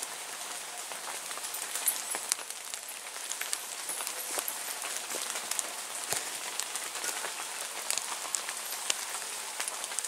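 Rain pattering steadily on woodland leaves: an even hiss scattered with many small ticks of drops.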